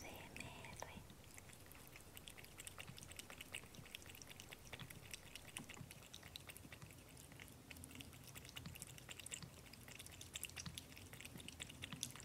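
Cat lapping water from a small bowl: a steady, quick run of faint wet clicks.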